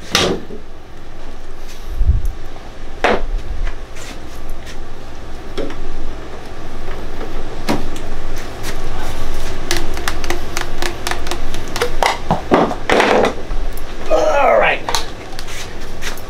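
Knocks, clicks and scrapes of PVC vent pipe and elbow fittings being worked apart and handled by hand, in sharp separate strokes. Brief indistinct speech near the end.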